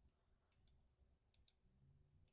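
Faint computer mouse button clicks over near silence: one click near the start, then two quick pairs of clicks, and another click near the end.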